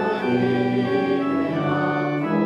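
Church organ playing a slow hymn in held chords that change step by step, with the congregation singing along.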